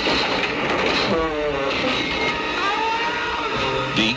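Horror film soundtrack: eerie music mixed with shrill wailing sound effects whose pitch glides up and down.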